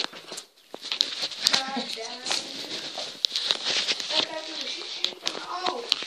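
Faint talking voices, with frequent clicks and rustling from the camera being handled.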